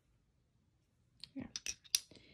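Small glass nail polish bottles clicking against each other as they are set down and picked up: a quick run of sharp clicks in the second half, the last one the loudest.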